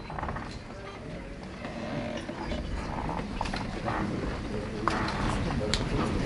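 Indistinct murmured talk and low voices away from the microphone, with a few scattered clicks, growing slightly louder.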